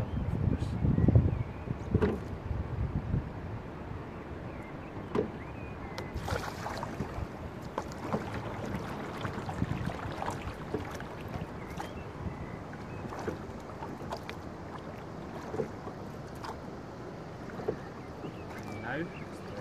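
Single-scull rowing boat under way, oars working: water running along the hull, with light knocks and splashes recurring every few seconds with the strokes. A louder low rumble comes in the first few seconds.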